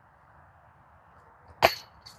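A Discmania Notion putter disc strikes a metal disc golf basket once near the end, a sharp metallic clank with brief ringing: a missed putt that hits the basket without staying in.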